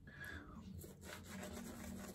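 Faint rubbing and scrubbing of a badger-hair shaving brush working lather on the face.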